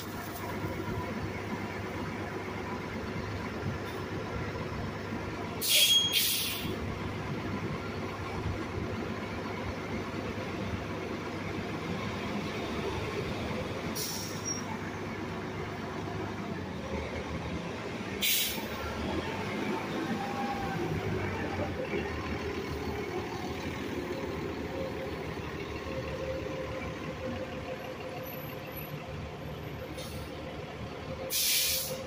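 City bus idling at the curb with a steady engine hum, giving short sharp pneumatic air hisses several times: a pair about six seconds in, then single ones around 14 and 18 seconds. After that the engine note rises as it pulls away.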